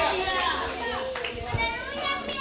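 Several voices of a congregation calling out at once, overlapping and high-pitched, in response to the preaching.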